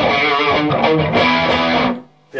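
Overdriven electric guitar played through a Cornford Carrera tube amp, its gain about halfway up for a crunch tone with a drive pedal kicked in, playing a rock riff of sustained chords that stops suddenly near the end.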